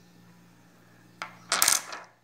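Pieces of a cut stone set down on a stone countertop: a sharp click a little past a second in, then a short rattling clatter of stone on stone.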